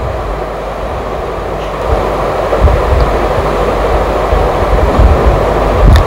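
Spice masala of onion, tomato puree, ginger-garlic paste and ground spices frying in mustard oil in a pan with a steady sizzle. It gets a little louder from about two seconds in, with irregular low knocks as it is stirred.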